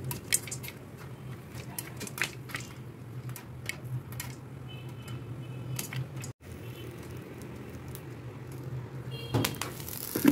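Popcorn popping in a pan under a glass lid: scattered, irregular pops over a steady low hum.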